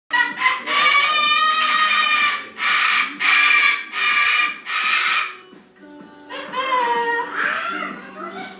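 Sulphur-crested cockatoo screeching: about five long, loud, harsh calls back to back over the first five seconds, then softer calls near the end, one falling slightly in pitch.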